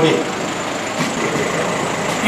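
A lull between speakers: steady background noise with a faint knock about a second in.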